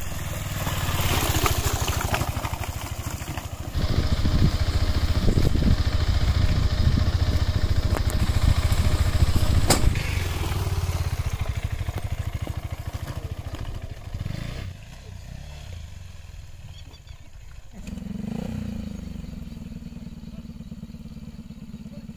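Motorcycle engine running as the bike rides over rough ground. It is loudest in the first half and drops away after about fourteen seconds. Near the end an engine idles steadily at a lower level.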